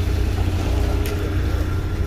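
An engine idling with a steady low rumble.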